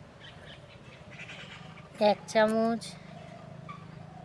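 A goat bleating once about two seconds in: a short note, then a longer, steady-pitched bleat.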